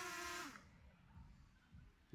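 DJI Spark drone's propellers humming faintly with a steady pitch, then spinning down and stopping about half a second in as the drone settles onto a hand.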